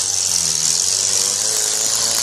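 UAZ off-road 4x4's engine running at low revs as the vehicle crawls through loose sand, with a steady high hiss over it.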